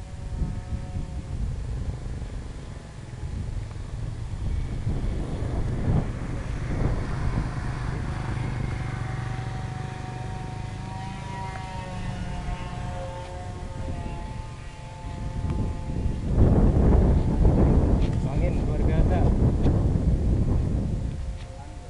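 Twin electric brushless motors and three-blade propellers of a radio-controlled ATR 72-600 model plane whining as it flies overhead. The whine is faint at first and returns stronger, with a slightly wavering pitch, from about eight to fifteen seconds in. Wind rumbles on the microphone throughout and is loudest near the end.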